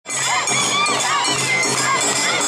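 Awa Odori street dance procession: children's shouted calls and crowd voices over the troupe's festival music, loud and continuous.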